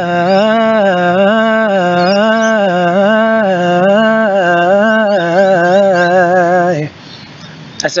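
A man singing unaccompanied, holding one long note on the word "fly" while its pitch swings evenly up and down about one and a half times a second, as an R&B-style run. The note stops suddenly about seven seconds in.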